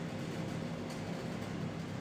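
Steady low hum with an even hiss and no speech, unchanging throughout.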